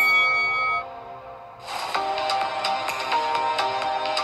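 An electronic chime from the workout interval timer, marking the start of a work interval, rings for about the first second and dies away. Electronic background music with a steady beat then comes in and carries on.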